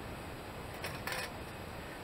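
Small wire-mesh live cage trap being handled and turned, giving a brief cluster of light metallic clicks and rattles about a second in, over a steady background hiss.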